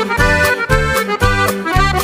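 Norteño music: an accordion plays an instrumental fill between sung verses, over a steady bass line and a regular rhythm-string pulse.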